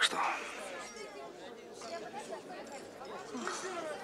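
Low, indistinct chatter of background voices in a restaurant, with no single voice standing out.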